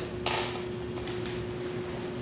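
A pause between sentences: a faint steady hum of room tone, with a brief hiss right at the start.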